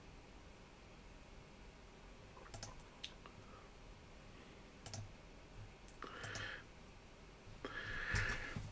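Faint computer mouse clicks, a few scattered ones, over near-silent room tone.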